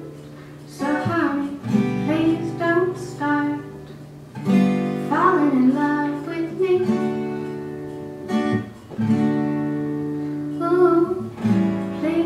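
A woman singing a slow song, accompanying herself on a strummed acoustic guitar. The sung phrases waver in pitch and are separated by short guitar-only gaps.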